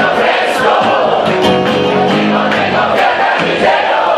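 Live rock band playing loud, with electric and acoustic guitars, and crowd voices over the music.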